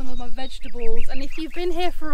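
A woman talking, her voice loud and close.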